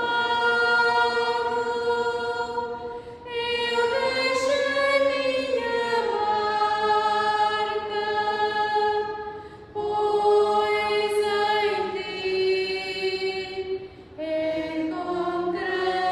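Choir singing a slow hymn in long held notes, the offertory singing at Mass. The phrases break briefly three times, about three, ten and fourteen seconds in.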